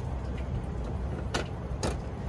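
Two sharp clicks about half a second apart, near the end: a trailer's seven-way connector plug being pushed into the truck's bumper socket. A steady low rumble runs underneath.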